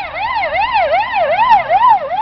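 Siren of a Renault G230 fire engine on an emergency run: a fast up-and-down wail, about two and a half sweeps a second, growing louder as the truck approaches.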